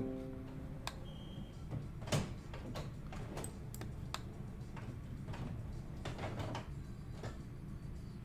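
Scattered faint clicks of a computer mouse over a low steady hum, with a pitched musical note dying away in the first second.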